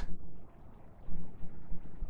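Pause in narration: low steady electrical hum and faint room noise picked up by the microphone, with a brief low bump a little after a second in.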